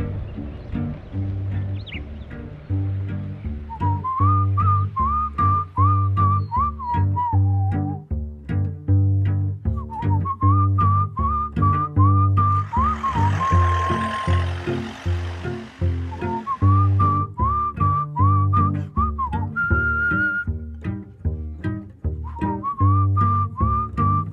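Background music: a whistled tune over a steady beat of low bass notes, with a hissing wash swelling and fading about halfway through.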